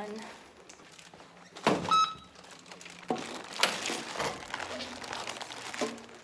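A loud thunk inside an elevator cab with a short electronic beep just after it, then a sharp click and the rustle of a padded jacket and a plastic bag as the person moves.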